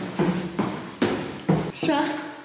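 Footsteps going down a stairwell's stairs, about two steps a second, each step ringing briefly in the hard-walled stairwell. A short spoken word comes near the end.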